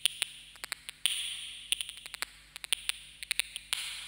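Opening of an electronic track: sparse, irregular clicks and ticks over swelling hiss, with no melody yet.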